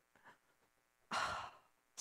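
A woman's sigh, one breathy exhale of about half a second coming about a second in.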